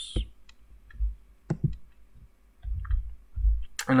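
A few scattered, separate clicks from a computer keyboard and mouse as a notebook cell is entered and run, with some low dull thumps between them.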